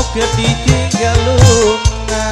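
Live dangdut music on an electronic organ (keyboard) over hand drums: a wavering melody line over held chords and a steady drum beat, played loud through a sound system.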